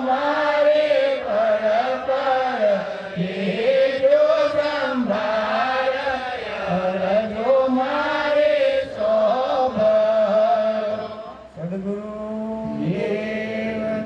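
A man's solo voice chanting a devotional verse into a handheld microphone, with long held notes that bend up and down and a short break about eleven and a half seconds in.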